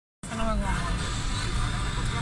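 Steady low rumble of a car's engine and road noise heard inside the cabin, with a faint voice speaking briefly near the start.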